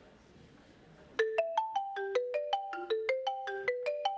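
Marimba struck with mallets: after a quiet pause of about a second, a quick melodic line of single ringing notes begins, about five notes a second.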